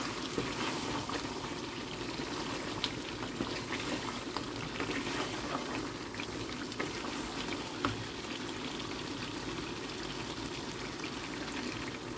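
Beef curry sizzling and bubbling steadily in a frying pan on the hob, with many small pops and a wooden spatula now and then scraping and knocking as it is stirred.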